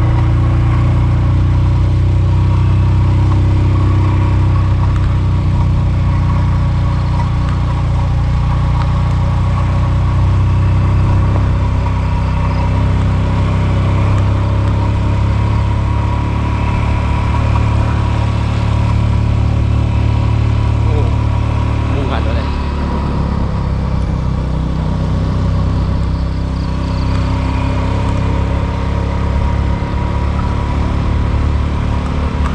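A road vehicle's engine running steadily while climbing a mountain road, a continuous low drone whose pitch shifts slightly partway through.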